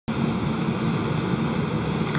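Steady hum and hiss of the International Space Station's cabin equipment and ventilation, with several steady tones held throughout; it starts abruptly.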